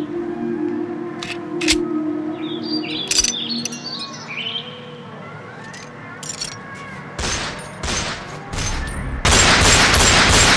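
Instrumental intro of a hip-hop track: a sustained low synth pad with a few sharp clicks and a run of short high notes stepping downward, then percussion hits come in about seven seconds in and the full beat drops in much louder just after nine seconds.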